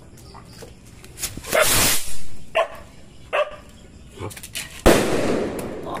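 Tap-Tap Big kwitis, a Filipino bottle rocket with a Yakult bottle attached, launching with about half a second of loud hiss. About five seconds in it bursts in one sharp, loud bang that echoes away.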